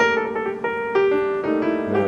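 Background piano music: a melody of single notes struck one after another.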